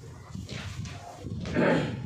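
A cloth duster wiping marker off a whiteboard in several rubbing strokes, the loudest near the end.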